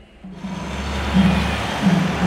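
A car passing on the road, its tyre and engine noise rising about half a second in, over rhythmic music with a repeating low note.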